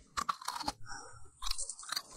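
Teeth biting and crunching into a glossy green chili pepper, a few sharp crackles in the first second, then a short lull and more crackles near the end.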